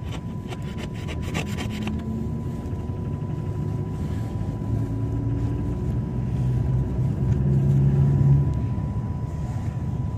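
Iveco Daily minibus heard from inside the passenger cabin while driving: steady engine and road rumble, with the engine note rising and getting louder about two-thirds of the way through, then easing off. Light rattles and clicks in the first couple of seconds, over a faint steady high whine.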